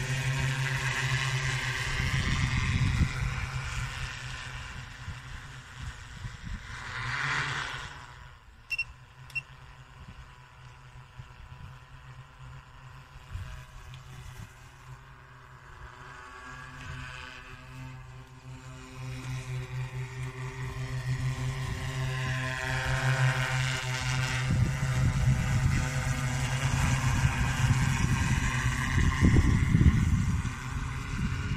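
Multirotor agricultural sprayer-and-fogger drone's propellers droning steadily, loud at first, fading away through the middle as the drone flies off, then growing louder again as it comes back near the end. Two short clicks about nine seconds in.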